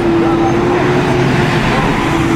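Street traffic: a heavy vehicle driving past, its engine a steady hum over loud road noise.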